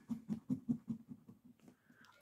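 A coin scratching the coating off a spot on a paper scratch-off lottery ticket: short, quiet rubbing strokes at about six or seven a second, stopping a little over a second in once the number is uncovered.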